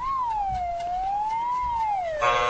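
A cartoon-style sound effect for the swinging needle of a goodness gauge: a single whistle-like tone that glides up, dips, rises again and then slides down.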